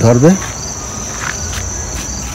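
Insects trilling in a steady, unbroken high tone, with a faint low rumble underneath.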